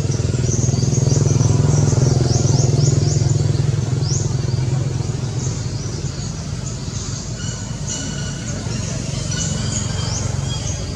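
A motor vehicle's engine droning, loudest in the first few seconds and then fading away, with birds chirping repeatedly in short high notes over it.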